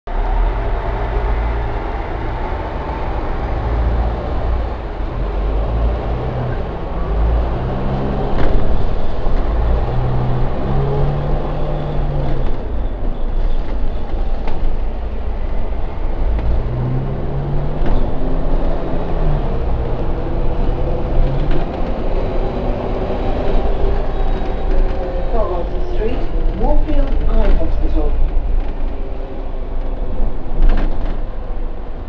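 Double-decker bus engine running as the bus drives through city traffic, heard from inside on board: a heavy low rumble, with the engine note climbing in steps twice as the bus pulls away and moves up through its gears.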